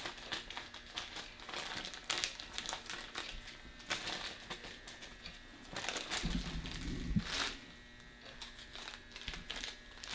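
Paper tattoo stencil transfer sheet crinkling and rustling as it is handled on the skin and peeled off the arm, in irregular crackly strokes. A dull low bump sounds about six seconds in.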